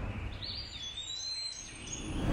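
Faint high chirping, whistling tones that start about half a second in, over a low steady rumble: ambient sound laid under a logo animation.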